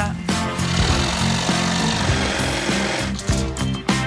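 Electric jigsaw cutting a curved shape out of a plywood sheet. It starts a moment in and stops about three seconds later, over background music.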